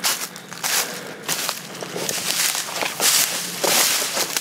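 Footsteps walking through dry fallen leaves on a forest trail, an irregular run of crunching steps.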